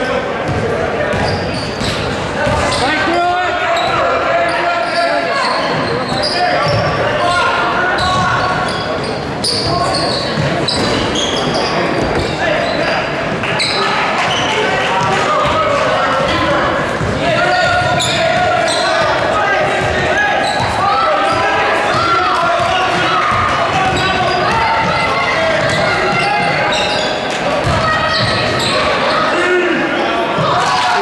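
Basketball bouncing on a hardwood gym floor during play, under constant overlapping voices of players and spectators calling out, all echoing in a large gymnasium.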